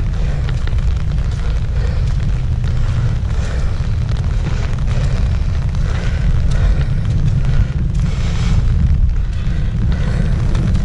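Wind buffeting the microphone: a loud, steady low rumble with a lighter hiss above it.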